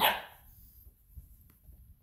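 A single short bark from a Saint Bernard–poodle mix puppy, right at the start.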